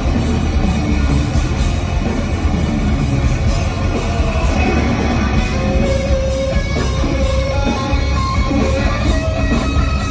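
Live heavy metal band playing a thrash song at full volume, with distorted electric guitars over bass and drums. Some held guitar notes ring out in the middle.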